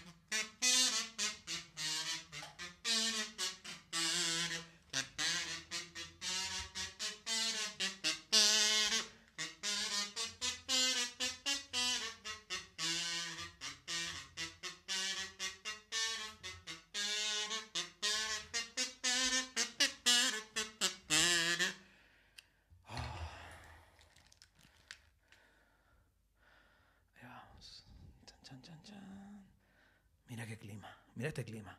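A slow saxophone-led melody over held low chords, cutting off abruptly about twenty-two seconds in; faint scattered sounds follow.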